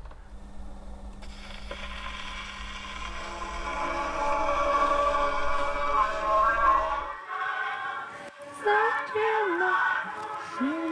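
An old recorded song playing on an 80-year-old wind-up gramophone, with a steady low hum under the music that stops about seven seconds in.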